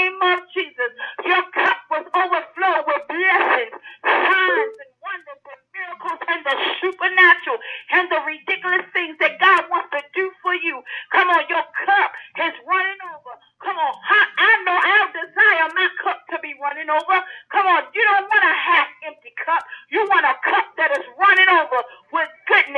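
Speech only: a preacher talking almost without pause, with only brief breaths between phrases.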